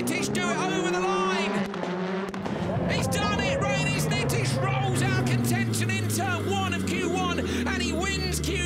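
Rallycross supercar's turbocharged four-cylinder engine at racing speed, its pitch rising over the first couple of seconds and then dropping in steps as the car backs off after the finish line, heard partly through the onboard camera.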